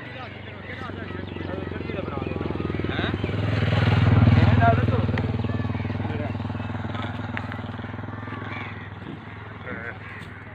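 A motor vehicle engine passing by: it grows louder to a peak about four seconds in, then slowly fades away. Men's voices are heard over it.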